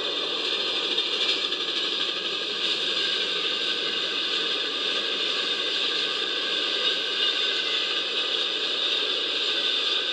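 Steady rolling noise of a long train crossing a steel trestle bridge, heard as played back through a device's speaker and re-recorded, so it sounds hissy.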